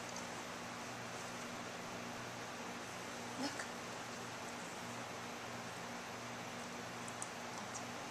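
Quiet room tone: a steady hiss with a faint low hum, broken only by a brief faint sound about three and a half seconds in and a few faint clicks near the end.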